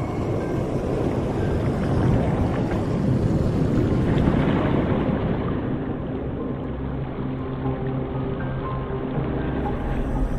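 Film score over an underwater ambience: a dense low rumble that turns muffled about halfway through, with low sustained notes underneath.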